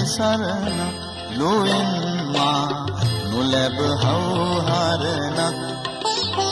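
A man singing a slow, ornamented melody into a microphone, amplified through a PA, with held, wavering notes and gliding pitch over steady instrumental accompaniment.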